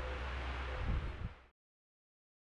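Faint shop room noise with a steady low hum, cut off abruptly about one and a half seconds in, then silence.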